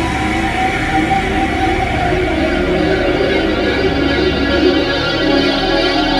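Horror-style synthesizer music from an Alesis QS6, layered over a pre-recorded synth mix: dark chords held steadily over a low pulsing rumble. The rumble gives way to a smoother low note about five seconds in.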